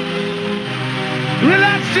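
Early-1990s hardcore rave music from a DJ mix, with held synth chords over a bass line; about a second and a half in a voice slides sharply up in pitch.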